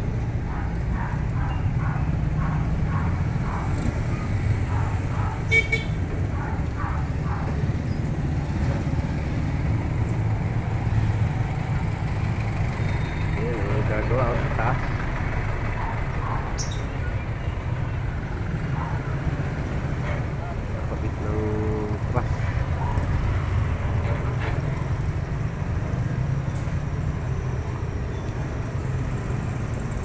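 Street traffic: a steady low engine rumble from vehicles on the road, with a short horn-like tone about two-thirds of the way through.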